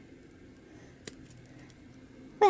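Small plastic toy parts being handled and pressed together: one sharp click about halfway, then a few fainter ticks, with the room otherwise quiet.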